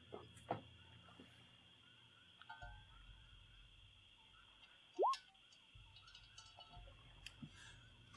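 Quiet background with a faint steady high hum and a few soft clicks. About five seconds in comes a single short rising chirp, like a whistle sliding upward.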